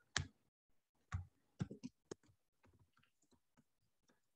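Faint, irregular clicks of keys on a computer keyboard as a sentence is typed.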